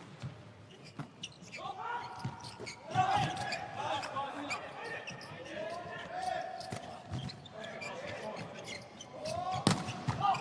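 Volleyball rally in a large indoor hall: the ball struck hard at the start and again just before the end, with a few lighter hits between. Sneakers squeak on the court floor through most of the rally, in many short rising-and-falling squeals.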